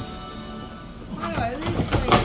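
Background television sound: music with voices, at moderate level, the voices coming in about a second in.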